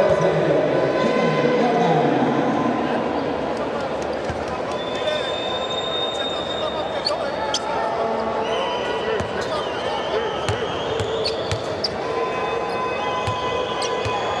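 Basketball arena crowd noise with many voices, scattered sharp knocks and a few high drawn-out squeals.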